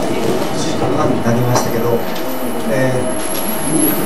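A man's voice over a handheld microphone and the room's PA, over a steady noisy background hum of the hall.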